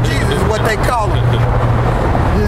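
Men talking for the first second or so, over a steady low hum of street traffic that is heard most plainly in the second half.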